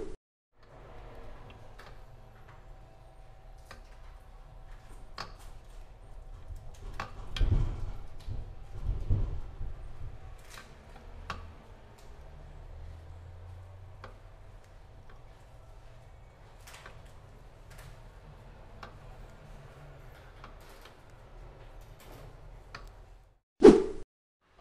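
A Ducati 750 Super Sport bevel-drive engine's gear train is turned over by hand, giving light clicks and a few soft knocks of the gears and handling over a steady low hum; the gears mesh smoothly with no backlash. A brief loud burst comes near the end.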